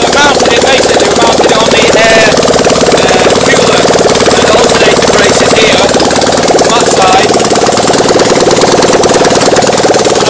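Generator engine running loud and steady on a metal mounting frame, with a fast, even hammering pulse. It vibrates hard enough to shift about on the frame because it is not yet held down.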